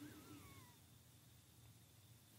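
Near silence: room tone with a faint low hum. A single faint high call glides down in pitch during the first second.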